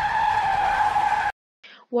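Car tyre screech sound effect: a steady, loud skidding squeal that cuts off abruptly just over a second in.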